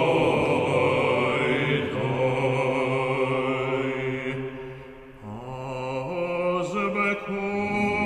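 Synagogue liturgical music for cantor, choir and organ: a long held chord that dies away about five seconds in, then new sustained notes enter and change in steps.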